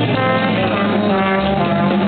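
Live jazz combo playing: a trumpet soloing over bass, piano and drums.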